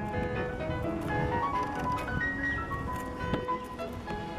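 Background music: a melody of held, chime-like notes over a fuller accompaniment.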